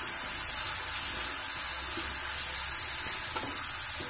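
Green chillies and mint leaves frying in hot oil in a non-stick kadai, sizzling steadily while a spatula stirs them.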